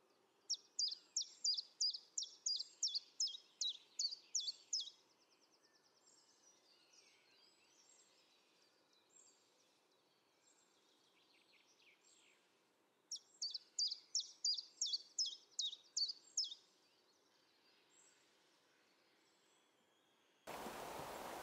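A small songbird singing two phrases, each a fast run of about a dozen high, falling notes repeated about three to four times a second. The first starts just after the beginning and ends in a short buzzy trill; the second comes about 13 seconds in.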